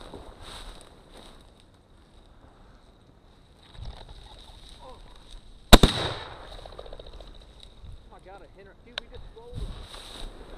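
A single shotgun shot a little over halfway through, sharp and very loud with a short echo trailing off; it is the shot that brings down a bird.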